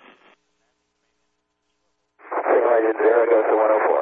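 Near silence for about two seconds, then a voice over a narrow-band, tinny radio link, typical of air-to-ground radio calls between Mission Control and the shuttle crew during launch.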